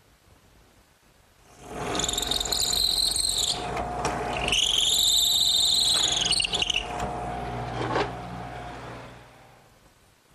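Power drill spinning up and boring a pilot hole through the end of a galvanized steel bracket on a wooden 2x4, with two high-pitched screeching passes of the bit cutting the metal over a steady motor hum, then running down.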